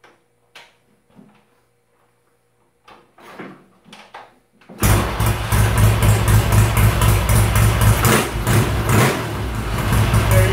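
A few quiet clicks and knocks, then the 1976 Triumph Bonneville T140V's 750 cc parallel-twin engine fires suddenly about five seconds in and keeps running with a fast, pulsing beat whose level rises and dips a little.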